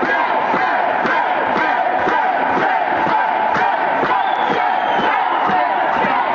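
A crowd of protesters shouting and chanting, many voices overlapping without a break.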